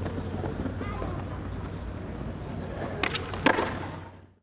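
Outdoor ambience with a steady low hum. Near the end come a couple of sharp clacks, the loudest about three and a half seconds in.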